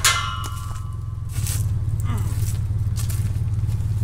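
A galvanized metal tube farm gate clangs once, ringing briefly, at the very start. A steady low hum runs underneath, with a few faint scrapes after.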